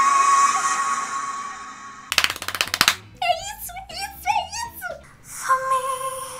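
A woman's singing voice holds a long high belted note that fades out about two seconds in. A short rattling burst follows, then a voice in quick rising and falling phrases, and a new held note begins near the end.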